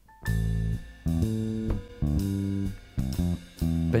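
A live rock band opening a song: chords in short, rhythmic stabs with the guitar and bass guitar to the fore. A man's singing voice comes in right at the end.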